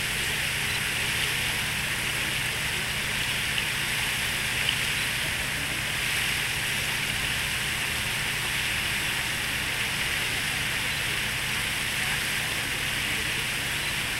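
Steady rushing splash of a large fountain's water jet falling back into its basin.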